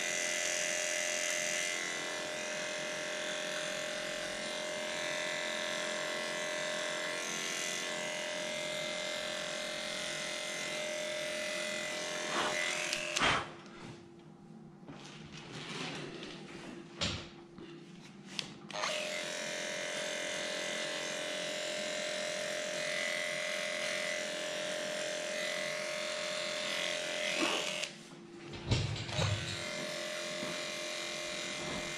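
Cordless electric dog clipper running with a steady hum as it trims a dog's coat. It is switched off for about five seconds partway through, with a few clicks of handling, then runs again, with a short stop near the end.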